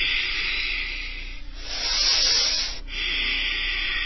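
Slow, audible breathing: three long breaths, each lasting about one and a half seconds.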